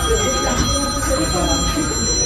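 A high electronic ringing tone, several notes held together, sounding through most of the two seconds over a voice.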